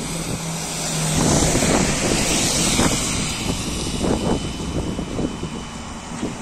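VMZ-5298.01 trolleybus passing close by. A steady low electric hum is heard for the first second or so, then the hiss of its tyres on the damp road peaks about two seconds in and fades as it moves away.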